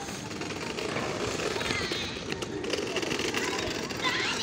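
Steady outdoor background noise with faint voices in the distance.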